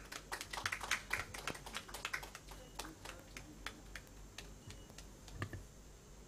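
Camera shutters clicking as photographs are taken: a flurry of irregular sharp clicks, dense for the first couple of seconds and then thinning out, with a few more clicks near the end.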